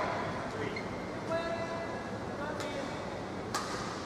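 Badminton court sounds: short squeaks of players' shoes on the court floor, and sharp hits of a racket on a shuttlecock, the loudest about three and a half seconds in, over a steady hall murmur.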